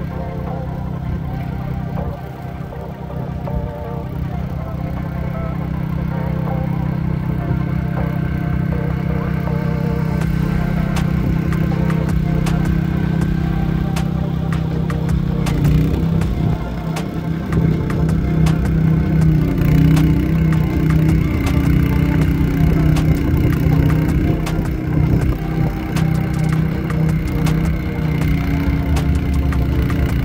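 Background music over a snowblower engine running steadily.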